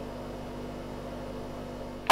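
FPZ Evolution side channel blower running steadily: an even hum and hiss with many faint steady tones and no single strong high whistle. Its sound is spread across the range by the uneven spacing of its impeller blades.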